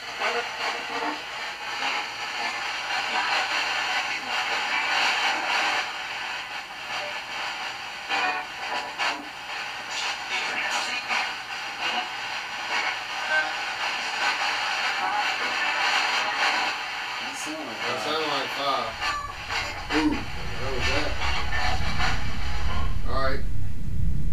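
Steady static hiss with scattered faint clicks, joined by a low rumble in the last five seconds.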